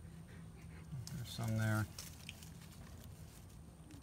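A man's voice: one short, steady, wordless 'mm' about a second and a half in, the loudest sound here, over a faint low hum.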